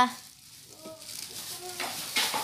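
Thin plastic bag crinkling and rustling as a toddler handles it, building up about halfway through, with a couple of faint child vocal sounds.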